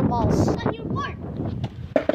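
Boys' voices with wind on the microphone, quieter in the second half, ending in a single sharp knock.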